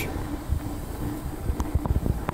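Low rumble of a handheld camera being moved and handled, over a steady low hum in the room, with a few soft knocks.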